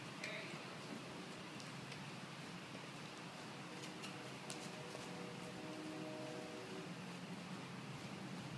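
Faint steady hiss and low hum with scattered light ticks, no clear rhythm.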